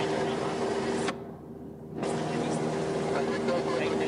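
Light propeller aircraft's piston engine and propeller droning steadily, heard from the cockpit. About a second in, the sound dulls and drops for just under a second, then comes back.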